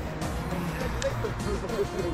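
Background music with a vocal line over a steady low rumble.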